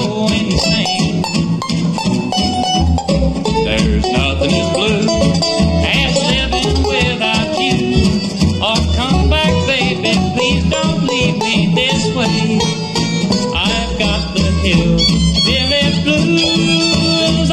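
Bluegrass band playing live, instrumental: a five-string banjo picks the lead break over acoustic guitar, mandolin and upright bass keeping a steady beat, with the fiddle taking over near the end.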